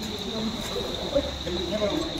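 Night insects chirring steadily in one high note, with people talking in the background.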